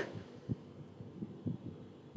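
Faint low thumps, about one a second, over a low hum.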